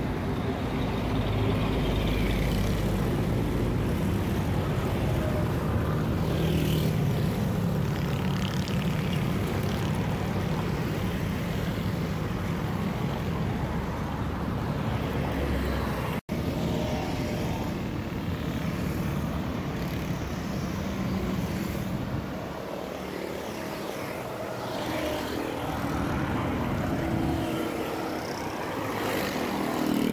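Steady traffic noise from a busy city road, cars, trucks and motorcycles passing with a continuous rumble. The sound drops out for an instant about halfway through.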